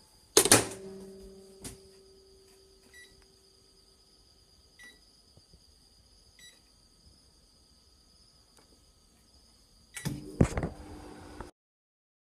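Microwave oven door shut with a knock, then three short keypad beeps about a second and a half apart. Near the end the oven starts running with a steady hum, which cuts off suddenly.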